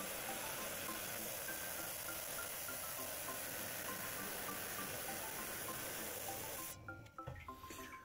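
Water-cooled lapidary band saw cutting through a Dryhead agate nodule: a steady hiss that stops about seven seconds in as the blade comes through the stone. Faint background music plays over it.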